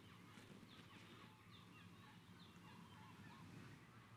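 Near silence: quiet room ambience with faint, short chirping bird calls repeated many times.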